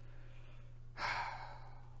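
A man sighs once, a breathy exhalation that begins about halfway through and trails off, over a steady low hum.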